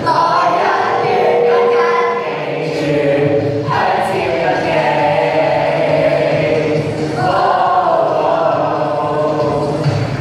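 A group of teenage boys and girls singing together as a choir, loud and sustained, easing off briefly about a third of the way in before swelling again.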